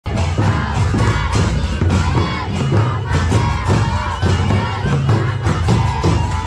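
Many voices singing and calling out together in a loud group chorus over a repeating low beat, the sound of a village folk circle dance.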